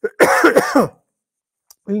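A man clears his throat once, a short harsh burst lasting under a second near the start, followed by a pause before he speaks again.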